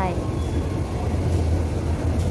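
Metro station escalator running, heard from on board: a steady low rumble and hum with even background noise from the station.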